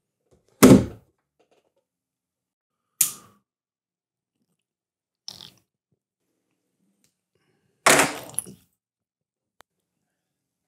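A few separate knocks and thuds of things handled on a desk near the microphone, the loudest about half a second in as a phone is set down on the tabletop, and a longer cluster of knocks near the end. Silence between them.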